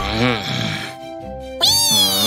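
Wordless cartoon character vocalisations over background music: a short low voiced murmur at the start, then, about one and a half seconds in, a loud, high, squeaky cry that falls in pitch.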